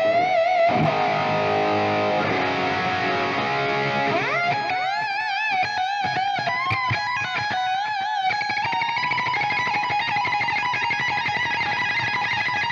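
Electric guitar lead playing: held notes with wide vibrato, a slide up to a higher note about four seconds in, then faster runs of notes.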